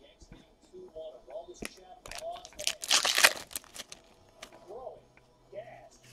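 A trading-card pack wrapper being torn open: a loud crinkling rip about three seconds in, with softer crinkles and handling noises around it.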